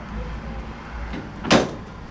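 Low steady rumble of road traffic coming through an open window, with one short, sharp sound about one and a half seconds in.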